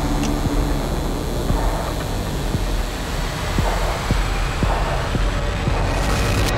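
Film-trailer sound design: a deep, steady rumbling drone with a faint tone rising through the second half as it builds.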